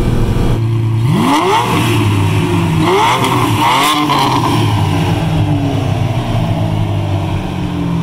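Ferrari Testarossa's flat-12 engine revving up twice in quick rising sweeps, about a second in and again near three seconds, then its note dropping slowly and running on steadily.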